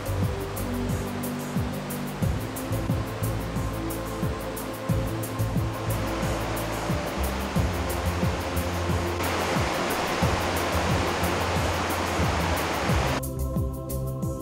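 Fast floodwater rushing in a swollen creek, heard under background music. The water noise grows louder about nine seconds in and cuts off suddenly near the end, leaving only the music.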